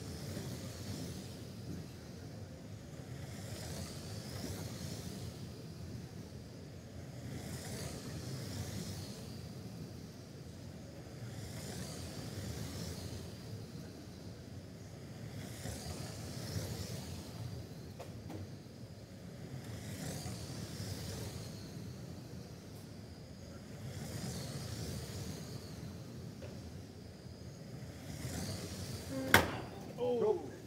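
Radio-controlled oval race cars lapping an indoor carpet track, their motor and tyre noise swelling and fading about every four seconds as the pack comes round. A single sharp knock near the end.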